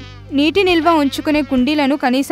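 Mosquito buzzing sound effect, under a woman's narration in Telugu and a soft background music bed.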